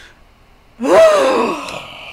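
About a second in, a woman lets out a loud, gasping vocal cry whose pitch jumps up and then slides down, a laughing groan, trailing off into a breathy exhale.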